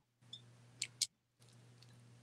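A few faint clicks of a gold metal chain necklace being handled and put on around the neck, the clearest two close together about a second in.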